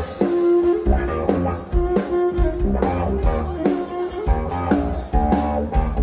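Live blues-rock band: an electric guitar plays a melodic line of held and sliding notes over a drum kit.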